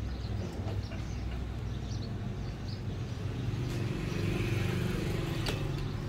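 Steady low background rumble with a motor-like drone swelling through the middle, and a sharp click near the end.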